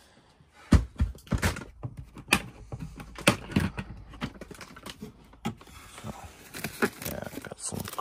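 A plastic storage tote being handled: a run of sharp, irregular clicks and knocks as its clear hinged plastic lid is moved and lifted open.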